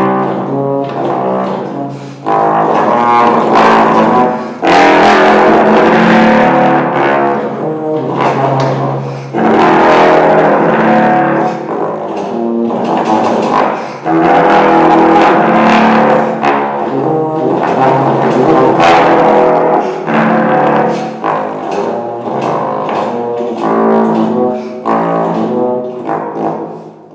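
Unaccompanied bass trombone playing a solo line: quick runs of short notes alternating with louder, longer held phrases.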